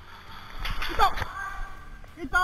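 A person's voice calling out briefly about a second in, its pitch falling, amid a short burst of rustling noise.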